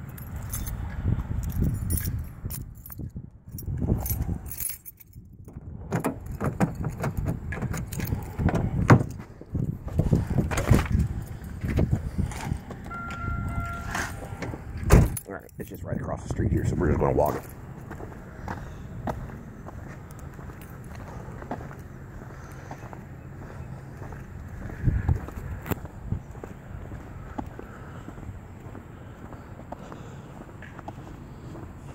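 Phone handling noise, with irregular knocks and rustles and keys jangling, and a short beep about halfway through. This gives way to quieter walking sounds outdoors.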